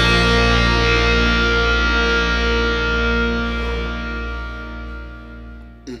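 Rock band's final distorted electric-guitar and bass chord held and ringing out, slowly fading away. Just before it dies out, a man gives a short "mm".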